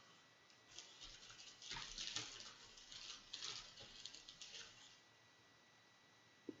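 Faint, irregular rustling and light taps of hands handling small objects, dying away about five seconds in.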